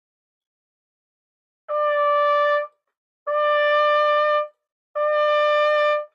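C trumpet playing the same sustained note three times, each held about a second with short breaks between. The flat note is being lipped up to pitch, which makes it sound brittle.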